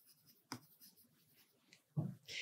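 Faint pen strokes on a whiteboard: a light tap about half a second in and a few small scratches.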